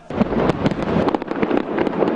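Fireworks going off: a dense, rapid run of bangs and crackles.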